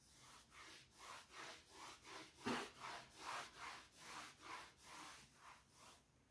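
Chalkboard being wiped by hand with a soft eraser: rhythmic back-and-forth rubbing strokes, about two to three a second. The loudest stroke, about two and a half seconds in, carries a light knock against the board.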